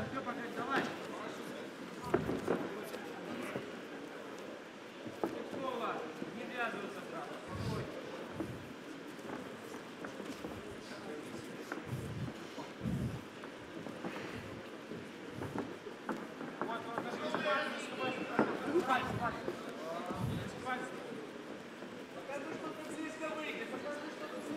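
Hall ambience around a caged MMA bout: distant shouting voices come and go, with a few short, dull thuds from the fighters' feet and strikes on the canvas.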